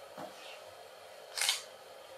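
A single short, sharp noise about a second and a half in, against quiet room tone.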